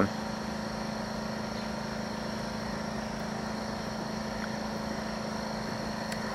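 A steady low mechanical hum with a faint high steady tone above it, unchanging and without distinct events.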